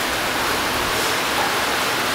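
Steady rain falling on an outdoor swimming pool, an even hiss of drops on the water and the deck.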